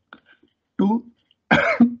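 A man's short cough, clearing his throat, about one and a half seconds in, right after a spoken word.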